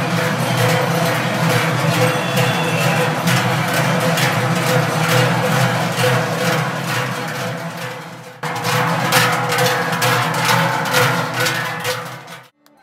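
Many large Swiss cowbells (Trycheln) swung by a marching column of Trychler, clanging together in a steady rhythm, with a short break about eight seconds in.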